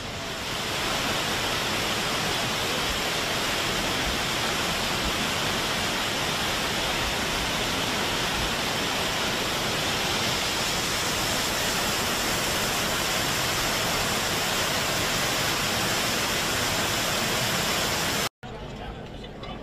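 A narrow waterfall pouring down a rock face: a steady rush of falling water that swells during the first second and then holds even.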